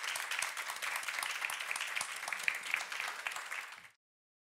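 Audience applauding: a dense patter of many hands clapping, which fades out near the end.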